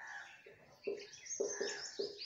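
Marker pen squeaking and scratching on a whiteboard in a run of short strokes as words are written.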